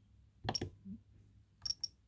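Clicks of buttons and the selector on a Jeti DS-24 radio-control transmitter being pressed to step through its menus: one click about half a second in, then two quick clicks near the end.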